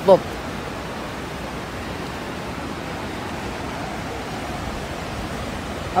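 Fast-flowing river water rushing past close by, a steady even hiss with no breaks.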